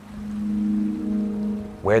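Background music: a sustained low held note, joined by a few higher held tones about a second in, like a soft synth chord.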